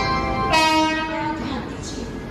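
Locomotive air horn sounding two notes back to back, the second slightly lower and louder and ending about a second and a half in. Underneath is the steady rumble of the moving train's coaches.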